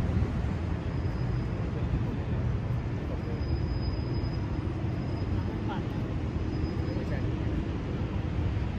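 Steady low rumble of city traffic and urban hum, with faint distant voices.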